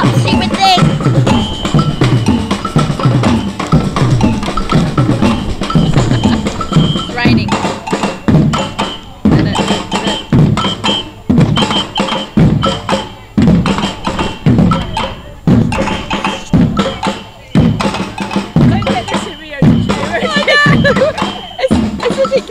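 A samba percussion band playing a steady groove: deep drum beats repeating under higher bell strokes.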